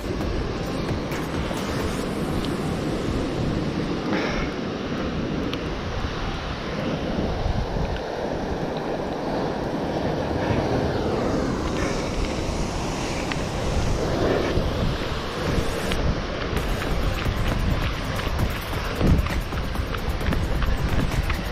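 Wind buffeting the microphone over the wash of surf breaking on a rocky shoreline: a steady rushing noise with no pauses.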